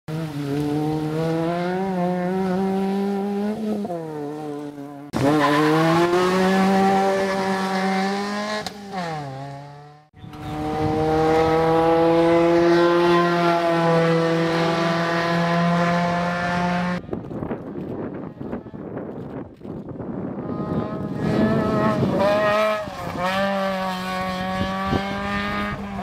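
Volkswagen Polo 1600cc rally car engine at high revs, its note climbing and dropping sharply again and again with throttle and gear changes. The sound is edited from several clips that cut abruptly one to the next.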